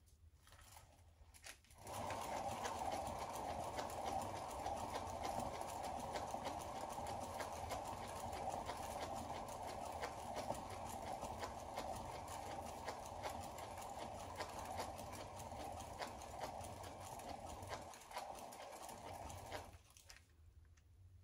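A painting turntable spinning a canvas: a steady rumbling whir with rapid fine ticking from its bearing. It starts about two seconds in and winds down shortly before the end.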